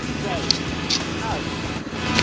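Off-road motorcycle engine idling, with brief indistinct voices, two sharp clicks about half a second apart, and background music.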